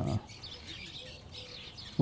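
Small birds chirping faintly in the background, a scatter of short high calls, after a spoken "uh" that trails off at the start.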